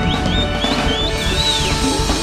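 Live band playing, with drum kit and bass under a high lead line that slides and bends in pitch.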